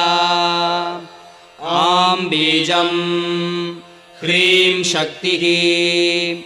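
A solo voice chanting a Sanskrit mantra in long, held notes. There are three drawn-out phrases, with brief breaks about a second in and again about four seconds in.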